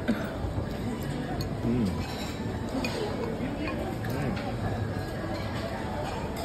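Indoor crowd hubbub: indistinct voices of other diners in a busy eatery, steady and fairly quiet, with a few faint clinks of tableware.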